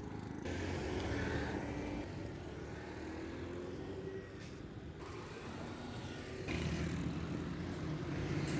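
Busy road traffic: the engines of auto-rickshaws, motorcycles and cars running and passing close by. It grows louder about half a second in, eases off for a while, and swells again near the end as another vehicle comes past.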